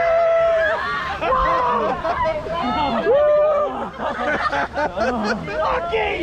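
Riders on a rapids raft ride shouting, whooping and laughing excitedly over the rush of water.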